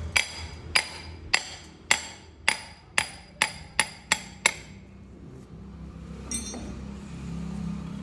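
Hammer striking a steel rod driven into the outlet hole at the base of a wood-press (chekku) oil mill: about nine ringing metallic blows, coming faster near the end, knocking the oil outlet open. A single fainter clink follows about six seconds in.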